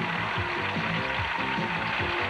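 Instrumental transition music with a steady beat and held notes.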